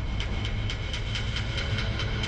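Suspenseful background score: a fast, even ticking of about five beats a second over a low, steady rumble, with high held tones.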